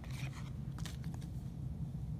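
Faint rustling and light clicks of trading cards being handled and flipped over, over a steady low hum.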